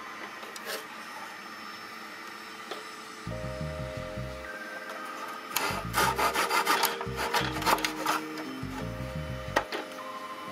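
Hand saw cutting a thin wooden dowel held in a plastic miter box: a quick run of back-and-forth strokes lasting about two and a half seconds, starting a little past halfway.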